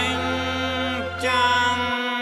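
Music with long held melodic notes over a steady bass; the bass drops out near the end.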